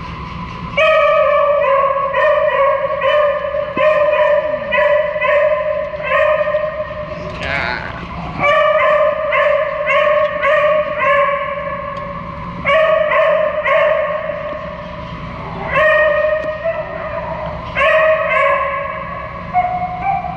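Small dog barking in quick runs of high, even-pitched yaps, about two a second, with short pauses between runs, while play-fighting. A brief higher rising whine comes about seven to eight seconds in.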